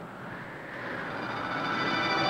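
A rushing whoosh like wind, swelling in level, as a flying figure passes overhead. Orchestral music fades in under it from about halfway.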